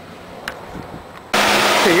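Electric radiator cooling fan from a mid-90s Ford Thunderbird running, a loud steady rush of air that cuts in suddenly about a second and a half in. Before it there is a low background with a single click.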